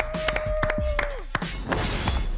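A small group of people clapping in uneven, scattered claps, with one long held cheer at a steady pitch that drops away a little over a second in.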